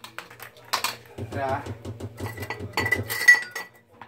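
Metal clinks and clatter of a tin can and a handheld can opener being handled and set down on a counter, with a thin ringing tone in the second half and a brief murmur of a man's voice a little over a second in.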